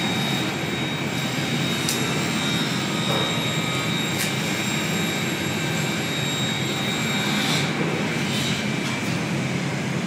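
Steady loud machinery noise with a faint high tone running through it, broken by a few sharp clicks.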